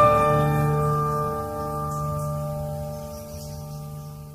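An acoustic guitar chord ringing out and slowly fading, several notes sustaining with no new notes played.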